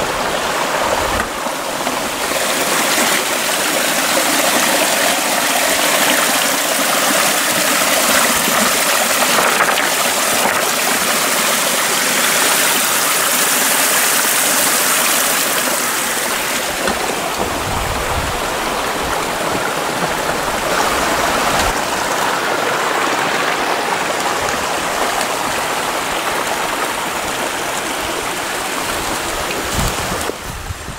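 Small forest creek running and splashing over rocks close to the microphone, a steady rushing water sound.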